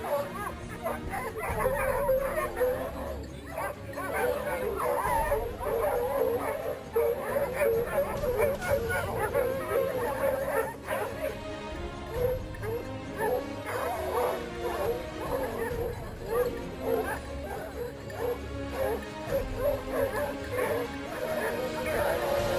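Boar-hunting dogs yelping and barking in quick, overlapping cries, giving tongue on a wild boar's scent trail.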